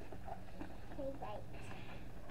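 Faint, brief fragments of a voice over a steady low hum, with no clear handling sounds from the box.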